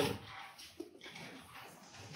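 Quiet background noise of a large hall in a pause between words, with one brief faint pitched sound a little under a second in.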